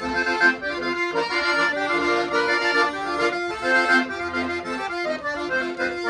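Freshly tuned Paolo Soprani piano accordion played solo: a melody on the right-hand keyboard over left-hand bass notes and chords, the notes changing every fraction of a second.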